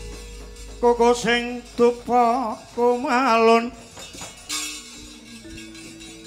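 Javanese gamelan music: a woman's voice sings a wavering, ornamented phrase from about a second in to nearly four seconds. Soft, steady held gamelan notes follow near the end.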